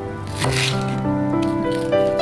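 Background music with sustained notes. About half a second in, a short slicing sound: a kitchen knife cutting through a myoga (Japanese ginger bud) on a cutting board.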